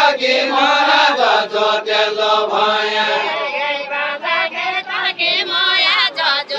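A group of voices singing a deuda song together, unaccompanied by instruments, as the dancers step in their linked line.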